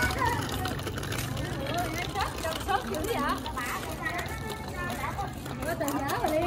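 Indistinct voices talking in the background over a low, steady rumble of street traffic.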